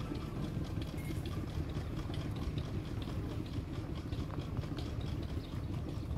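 An engine idling steadily, a continuous low running sound.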